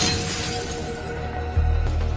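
Bus window glass shattering at the very start as it is broken in, its debris tailing off under dramatic film score music with held tones and a deep low hit about three-quarters of the way through.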